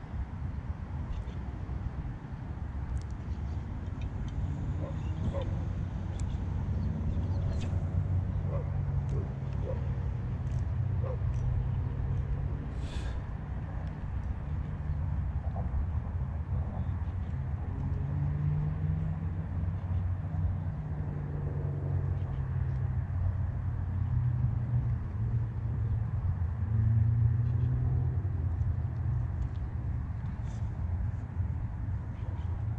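Steady low rumble of distant city traffic, with engine hums that rise and fall as vehicles pass.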